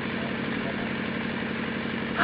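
A steady, low mechanical hum with a fine rapid pulse, like an engine idling.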